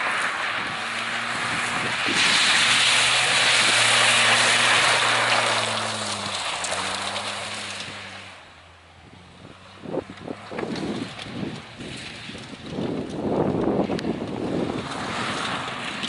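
A race car's engine pulling hard, its pitch stepping up and down through the gears, with gravel and tyre noise loudest a few seconds in. The car fades off about halfway through, and gusts of wind buffet the microphone near the end.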